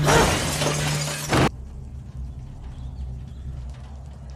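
Window glass shattering as a man is pushed through it: a loud crash of breaking glass that lasts about a second and a half and cuts off suddenly, over a low steady hum. A faint low rumble follows.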